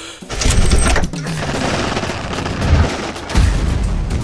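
Cartoon explosion sound effects: a dense crackling blast that starts suddenly just after the beginning and keeps going, with heavy low thumps near the end, like gunfire and explosions.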